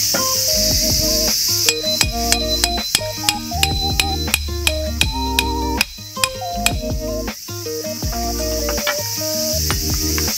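Background music with a melody and bass. Over it, starting about two seconds in and stopping near the middle, comes a run of about a dozen sharp metallic strikes, about three a second, each with a short ring: a hammer driving a metal tent peg.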